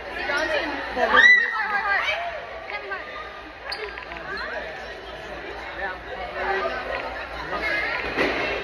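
A group of young people talking and calling out over each other, with a loud high-pitched squeal about a second in.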